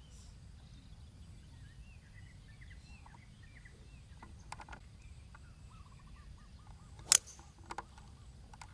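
A golf club strikes the ball on a tee shot: one sharp crack about seven seconds in, the loudest sound by far. Birds chirp and call in the background before it.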